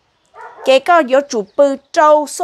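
A woman talking in Hmong in a high, animated voice, starting after a brief silence.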